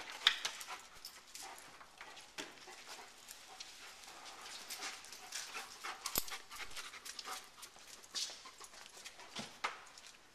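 A German shepherd-type dog searching, panting and sniffing, with scattered light clicks and rustles as it noses among cardboard boxes and moves across a concrete floor.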